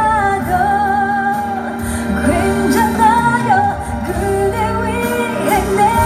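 A woman singing a slow pop ballad in Korean live into a microphone over instrumental accompaniment, holding long notes with a wavering vibrato.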